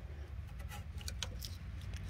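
Faint scraping and clicking of a flat screwdriver worked around a rubber drain-pipe sleeve, prying it off the metal pipe, over a low steady rumble.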